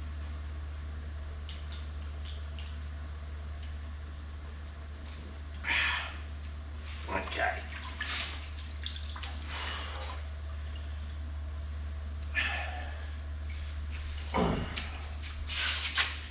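Live southern rock lobsters being handled in a plastic bucket: shells and legs scraping and clattering, with some wet splashing, in several short bouts from about six seconds in, the loudest near the end. A steady low hum runs underneath.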